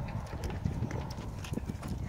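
A few light, irregular knocks and taps over a steady low rumble of wind on the microphone.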